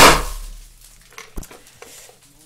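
Champagne-bottle-shaped confetti popper going off with a single loud bang that dies away over about half a second. A faint knock follows about a second and a half in.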